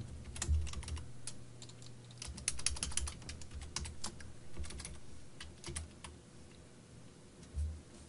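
Typing on a computer keyboard: irregular keystrokes, some in quick short runs, with a few dull low knocks from the keys.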